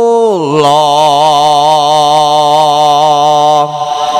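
A singer holding one long chanted note, the vocal of topeng ireng dance music: the pitch drops about half a second in, then the note is held with a wavering vibrato and stops shortly before the end.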